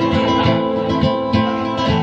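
Acoustic guitar playing chords in a steady strummed rhythm, an instrumental passage between sung lines.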